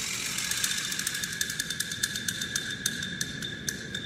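A small motor running with a steady whine and rapid ticking.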